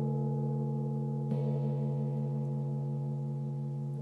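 A gong ringing on after a strike: several steady low tones slowly fading, with a slight wavering. About a second in, a light second stroke briefly lifts the ringing.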